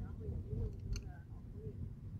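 Low rumble of a car moving along a street, heard inside the cabin, with faint voices and one sharp click about a second in.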